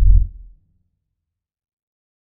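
A single deep bass boom, an edited sound-effect hit, that fades out about half a second in and leaves dead silence.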